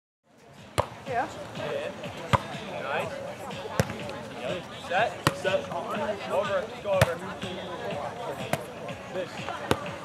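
A volleyball being played in a sand volleyball rally: sharp slaps of forearms and hands on the ball, roughly a second apart, over the voices of players and onlookers. The sound fades in just after the start.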